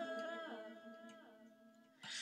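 A woman's sung chant note dying away in its reverb, fading to near silence by the end.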